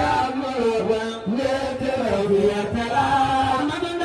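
Religious chanting: one voice sings long, wavering held notes that slide between pitches, with music faintly underneath.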